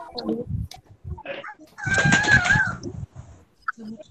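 A rooster crowing once, about two seconds in, for under a second, heard over a video call's audio.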